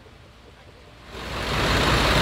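Faint background, then about a second in a heavy tow truck's engine comes in loud and steady close by, idling.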